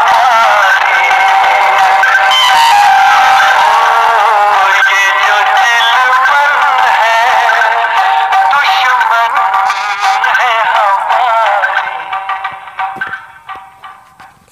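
A man singing a Hindi film song in a wavering, drawn-out melody, his voice dying away over the last two seconds as the line ends.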